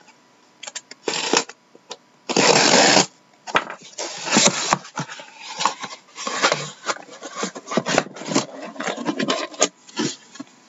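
Packing tape on a cardboard shipping case being cut and pulled open, then the cardboard flaps folding back and the sealed card boxes inside scraping and knocking as they are lifted out. The loudest sound, a scrape lasting under a second, comes about two and a half seconds in.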